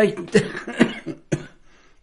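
A man coughing into his fist: three short coughs about half a second apart.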